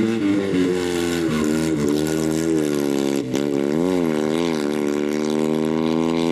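Fiat 126 race car's small air-cooled two-cylinder engine running hard as the car drives through a bend and away. The note drops briefly about three seconds in, then wavers up and down with the throttle before climbing again.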